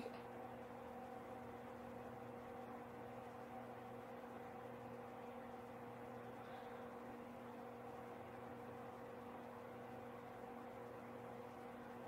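Quiet room tone: a faint steady electrical hum over light hiss.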